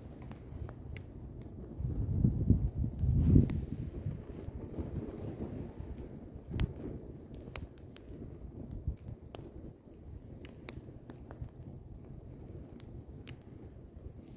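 Wood campfire burning, with scattered sharp crackles and pops over a low rushing rumble. The rumble swells loudest about two to three and a half seconds in.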